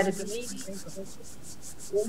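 A pause in the talk on a video call. The end of a woman's word is heard at the start, then low background noise with a faint, evenly pulsing high hiss, about seven pulses a second.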